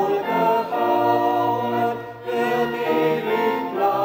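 A small group of men and women singing a hymn together, holding long notes, with a short pause between phrases about two seconds in.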